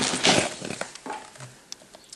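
Handling noise: a short rubbing, rustling burst as the mask and camera are moved against each other, then a few faint ticks as it dies away.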